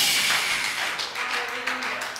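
Scattered hand clapping from a congregation, quick and uneven, coming in as a loud hiss-like burst fades in the first moments.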